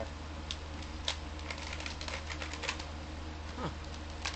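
Scattered light plastic clicks from an Air Warriors Walking Dead toy foam-dart shotgun being worked by hand while trying to cock it, over a steady low hum.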